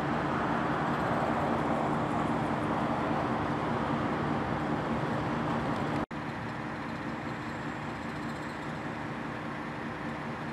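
Steady outdoor traffic and engine noise: a low running hum with a few held tones under a wash of road noise. It breaks off for an instant about six seconds in, at a shot change, and carries on a little quieter.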